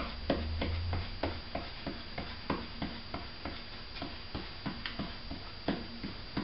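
Hands pressing and patting glued cotton fabric onto a cardboard tube drum, giving a run of soft, irregular taps, about two or three a second.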